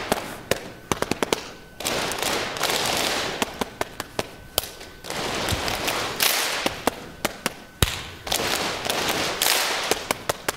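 Call-and-response hand clapping. One person claps a short rhythm of sharp, separate claps, then a large audience claps it back as a dense mass of claps. The exchange goes back and forth three times.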